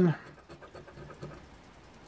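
Faint scraping of a coin rubbing the scratch-off coating from a lottery ticket's prize box.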